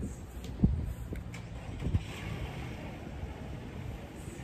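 Low, steady rumble of a car moving through a parking lot, with a short sharp knock just after half a second in and a softer one near two seconds.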